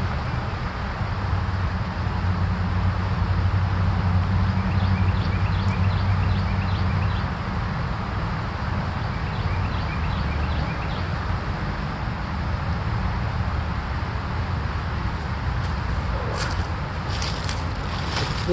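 Steady outdoor background noise, a low rumble with hiss above it, with faint repeated high chirps through the middle. Near the end come a few clicks and rustles of footsteps in dry leaf litter.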